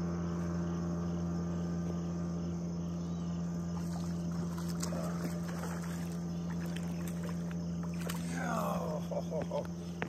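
A motorboat engine drones steadily at a low pitch throughout, with faint ticking as a fish is reeled in to the bank. A few short sliding sounds come near the end as the fish is lifted out.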